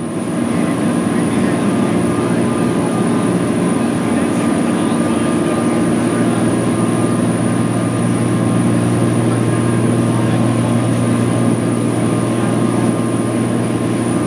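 A 134-foot aluminum catamaran running at about 26 knots, heard from its open aft deck: the steady, loud drone of its Caterpillar C32 diesel engines, with a low hum, under the rush of the churning wake.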